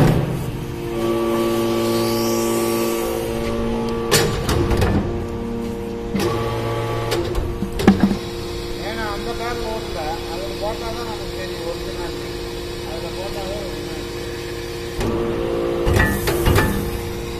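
Hydraulic metal-chip briquetting press running, its hydraulic power unit giving a steady hum. Heavy metallic clunks come about four, six and eight seconds in as the press cycles.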